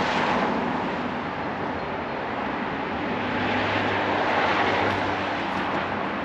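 Street traffic: vehicles passing, the noise swelling and fading twice. A low engine hum joins about three and a half seconds in.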